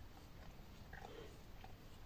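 Near silence: quiet room tone, with a couple of faint, soft small sounds about a second in.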